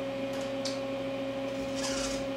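CNC milling machine running with a steady electric hum and whine, with a few faint ticks.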